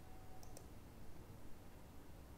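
Two quick computer mouse clicks, about a tenth of a second apart, faint over low room hum, as points are picked in a CAD program.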